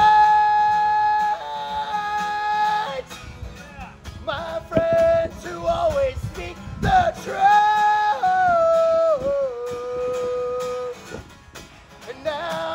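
A man singing to his own acoustic guitar, holding long sustained notes: one phrase at the start and another from about seven seconds in that steps down to a lower held note. The sound drops briefly near the end.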